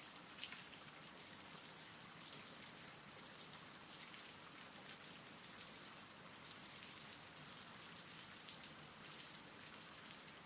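Faint, steady rain: an even hiss sprinkled with fine drop ticks.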